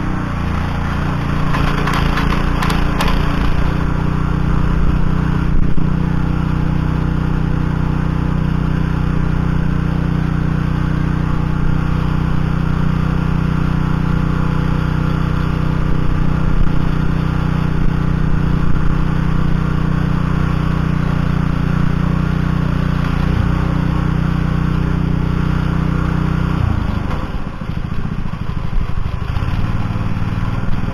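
Oka walk-behind tractor's single-cylinder Lifan petrol engine running steadily under load while its tiller tines work the soil. There is a brief clatter about two seconds in, and the engine note dips and wavers near the end.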